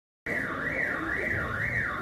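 Electronic alarm tone wailing, its pitch sliding up and down about once every two-thirds of a second.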